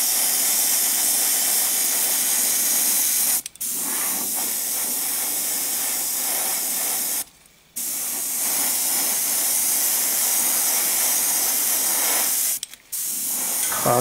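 Gravity-feed airbrush spraying acrylic paint: a steady hiss of air and paint that stops briefly three times, when the trigger is let off between passes. The passes are extra coats to darken the colour.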